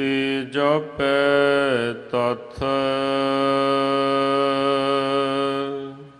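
A single voice chanting a line of the Sikh Hukamnama from the Guru Granth Sahib in slow melodic recitation. A few short sung phrases come first, then one long held note from a little under halfway through that fades out near the end.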